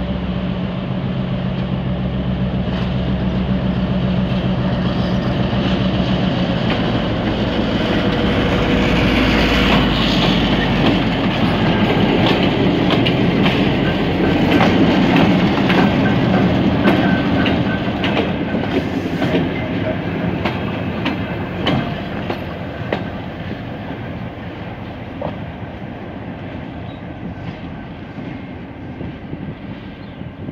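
Two EMD diesel-electric locomotives, a GR12 leading a GT22, running past: a steady engine drone with wheels clicking over the rail joints. The sound grows louder as they come by, peaking about halfway, then fades as they move away.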